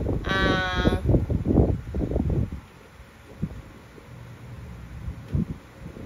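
A voice drawing out a wavering, hesitant "à..." for under a second, followed by muffled low sounds and then a quieter background with a few soft thumps.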